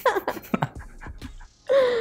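A man laughing breathily: a few quick, falling laughs, then a longer held voiced sound near the end.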